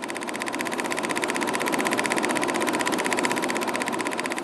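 Film projector running: a fast, even mechanical clatter of rapid clicks that holds steady.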